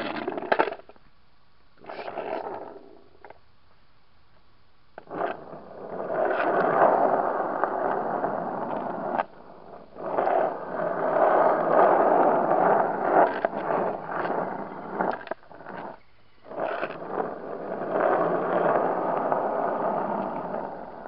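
Longboard wheels rolling on asphalt, in stretches of a few seconds broken by short pauses, with scattered clicks and knocks. The board is a newly arrived one that the rider says rattles all over, with wheels that barely turn.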